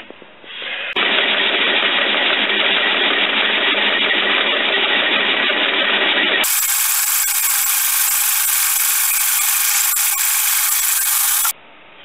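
An old machine tool cutting a solid aluminium block, a steady even noise of the cut. About six and a half seconds in the sound changes abruptly to a thinner, higher-pitched version, then stops shortly before the end.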